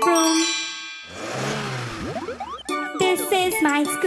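Cartoon sound effects: a bright chime rings out and fades as the toy car piece drops into its puzzle slot. A whoosh of about a second and a half with swooping pitch glides follows, then light, jingly children's music.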